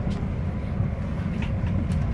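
Airliner cabin noise: a steady low rumble of engines and air flow, with a few faint clicks.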